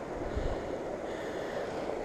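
Small mountain stream running steadily, with wind buffeting the microphone in low rumbles about half a second in.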